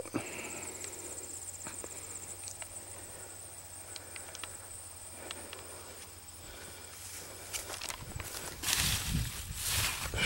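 Footsteps through dense leafy turnip plants, the leaves rustling and brushing, loudest in the last second and a half. Behind it runs a faint steady high insect trill.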